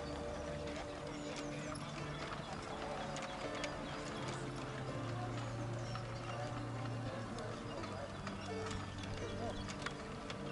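Hoofbeats of a pair of horses trotting in harness, pulling a carriage, with music playing over them.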